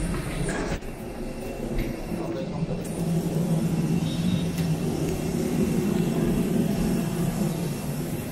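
A steady low mechanical hum, growing louder about three seconds in, with a faint murmur of voices underneath.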